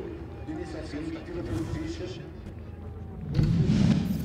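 Race-track ambience: a faint distant voice over a steady low background, then a loud low rumble lasting under a second near the end.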